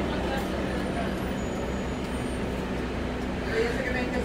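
Cabin of a New Flyer C40LF compressed-natural-gas city bus under way: the steady low drone of the engine and road noise, with a brief indistinct voice near the end.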